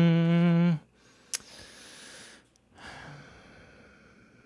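A sustained electric-piano chord, its pitch wavering slightly in lo-fi style, stops abruptly under a second in. Then come two soft breaths or sighs close to the microphone.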